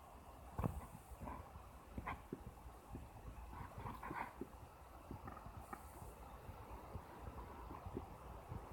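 Faint room noise with scattered soft clicks and taps.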